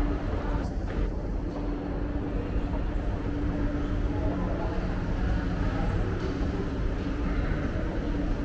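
Escalator running: a steady low mechanical rumble with a constant hum.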